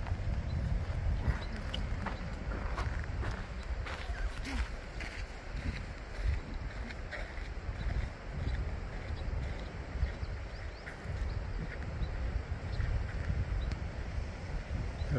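Footsteps scuffing and crunching on sandy granite trail, in irregular steps, over a steady low rumble of wind on the microphone.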